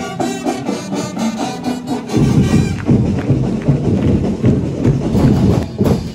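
Live parade band music: brass instruments play a melody, then drums and percussion come in louder about two seconds in.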